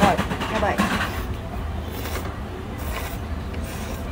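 Okinawa soba noodles being slurped in short noisy pulls, after a brief murmured voice at the start, over a steady low hum.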